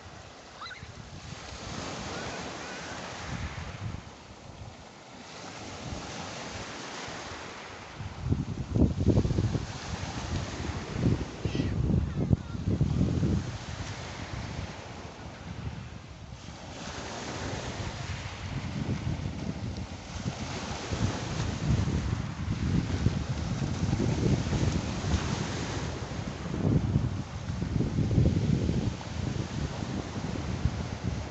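Small waves washing in and out over a pebble beach, the surf swelling and ebbing. From about eight seconds in, wind buffets the microphone in heavy gusts.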